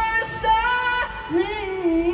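A woman singing live through a PA, holding one long note and then moving down to a lower one about midway.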